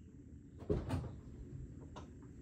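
A single dull clunk a little under a second in, over a low rumble.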